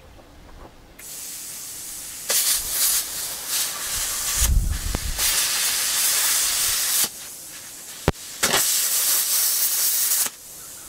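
Oxy-acetylene cutting torch hissing as it cuts scrap iron. The hiss comes in loud stretches that start and stop abruptly, with a low thud about four and a half seconds in and a sharp click a little after eight seconds.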